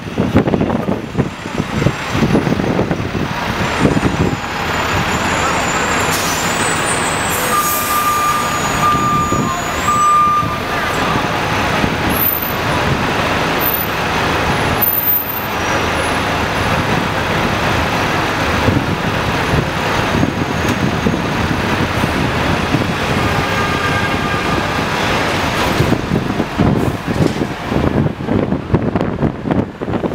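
Dense city street traffic and the running engine of a double-decker bus, heard from its open top deck as it moves slowly through traffic. A thin, steady high tone sounds for a few seconds starting about eight seconds in.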